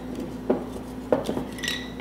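Cinnamon sticks knocking against a glass mason jar as they are pushed in. There are a few light knocks, the clearest about half a second and a second in.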